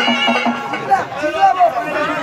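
Live stage-band folk music with a steady drone and a beat stops about half a second in. Loud shouting voices with a rising and falling pitch follow.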